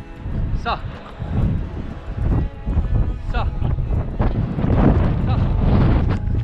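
Strong wind buffeting a GoPro action camera's microphone: a heavy, uneven low rumble that grows loudest near the end.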